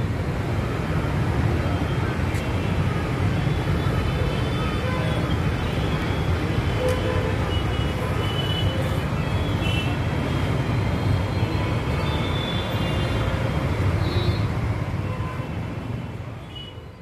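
Steady rushing of a flooded river in spate, a continuous low rumble and hiss of fast-moving water.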